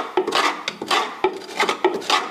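Steel spanner clinking and scraping on a bolt and the surrounding steel bodywork, in a quick, irregular run of short metallic clicks, about three or four a second.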